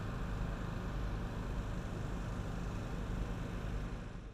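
Steady outdoor background rumble with a faint hiss, even throughout, with no distinct events.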